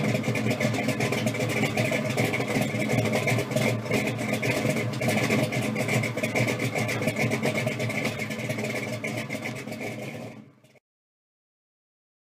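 A car engine running loud and steady, rough with fast pulsing. It fades and stops about a second before the end.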